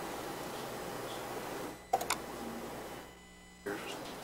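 Microphone room noise with a faint murmur and two sharp clicks about two seconds in, then another click near the end. The background cuts out for about half a second after three seconds.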